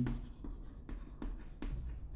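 Chalk scratching on a chalkboard in a series of short strokes as a word is written by hand.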